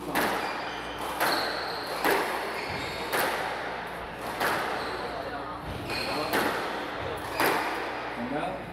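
Squash rally: the ball cracking off rackets and walls about once a second, about eight strikes in all, each ringing briefly in the hall. Short high squeaks follow some strikes, typical of squash shoes on the wooden floor.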